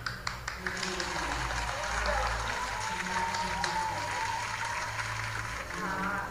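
Applause: a few separate hand claps at first, then dense clapping throughout, with music under it holding a wavering note.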